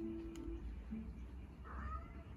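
A domestic cat meowing once, briefly, near the end.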